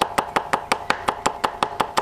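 Cleaver chopping fresh ginger on a thick round wooden chopping block: quick, even knocks of the blade striking the wood, about six a second.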